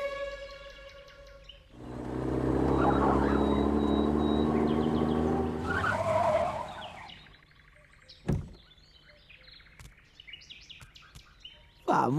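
Cartoon sound effect of a pickup truck's engine running as the truck drives up, loud for about five seconds and then fading away. About a second later comes a single sharp thump, followed by faint small clicks.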